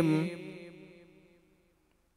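A man's unaccompanied chanted recitation: a long held note with vibrato ends just after the start, and its echo fades away to near silence over about a second and a half.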